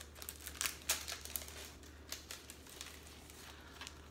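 Plastic packaging crinkling as a paper doll is pulled out of it: a dense run of quick crackles over the first couple of seconds, then fewer, with a few more near the end.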